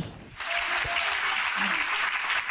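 A congregation applauding: steady crowd clapping that swells in about half a second in.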